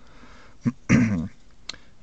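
A man clearing his throat once, about a second in.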